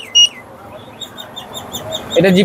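A short, high electronic beep from the Tasslock Defender anti-theft alarm remote as its button is pressed. After it comes a faint run of quick high chirps, about seven a second.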